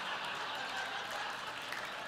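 Studio audience applauding and laughing, a steady wash of clapping that eases slightly toward the end.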